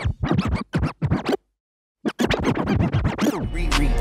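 DJ scratch effects: rapid back-and-forth record-scratch strokes, broken by a sudden gap of silence about a second and a half in, then more scratches. A hip-hop beat with heavy bass comes in near the end.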